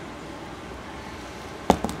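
A glazed stoneware pot set down on a work table: a sharp knock about a second and a half in, with a smaller knock right after, over a steady low room hum.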